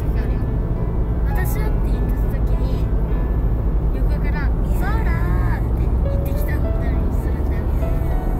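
Steady low road and engine rumble inside a moving car at highway speed, with music and a voice over it.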